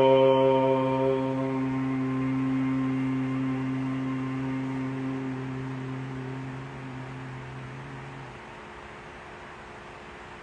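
A man's voice holding the long closing 'mmm' of an Om chant on one low steady pitch, slowly fading until it stops about eight seconds in, leaving a faint room hiss.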